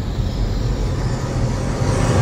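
Intro sound effect: a low rumble with a hissing whoosh above it, swelling slightly in loudness.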